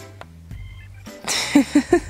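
Background music, then a man laughing in a quick run of short bursts over the last part.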